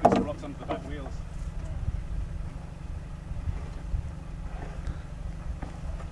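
Men's voices, loudest in the first second, then faint indistinct talk, over a steady low rumble.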